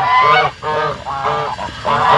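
Domestic geese honking, a quick run of short, overlapping calls.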